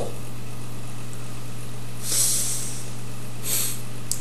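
Two breathy exhalations, sighs of exasperation, one about two seconds in and a shorter one near the end, over a steady low electrical hum.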